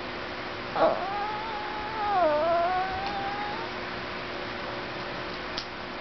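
Chihuahua–Italian Greyhound mix dog giving one long whining 'talking' call: it starts suddenly about a second in and draws out for about three seconds, dipping in pitch in the middle and rising again before it fades.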